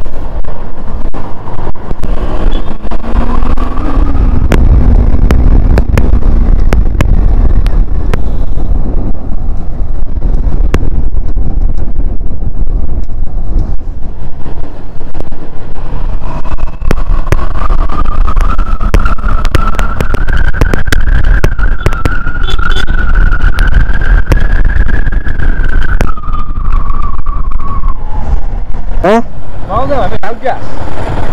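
Kawasaki Z400 parallel-twin engine running under way, heard through heavy wind rush on the microphone. Its pitch rises as it accelerates, then climbs slowly and falls again over about ten seconds, and there are a few quick sharp revs near the end.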